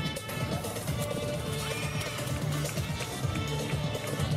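Music playing, with a purebred Arabian horse whinnying and its hoofbeats beneath it.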